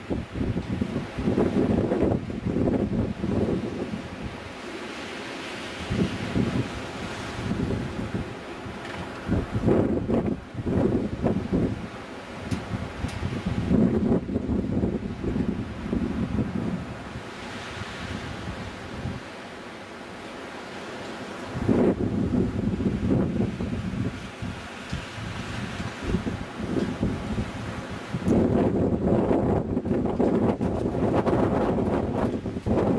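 Bora wind gusting hard against the microphone: a low rushing rumble that swells and eases, dropping off a few seconds in and again past the middle, then gusting back hard about two-thirds through.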